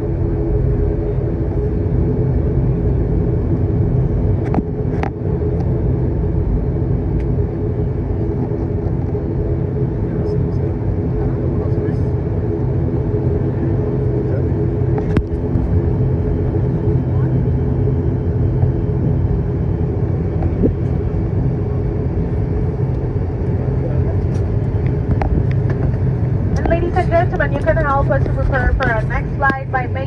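ATR 72 turboprop engine and propeller heard from inside the cabin while the aircraft taxis after landing: a loud steady drone with low humming tones. A few light clicks, and a voice starts talking near the end.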